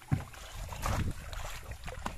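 Shallow muddy pond water splashing and sloshing as a bamboo polo trap is brought down into it and a person wades, with a sudden loud splash just after the start and more splashing around a second in.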